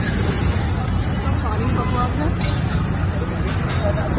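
Busy street noise: a steady low rumble of traffic with the babble of voices around.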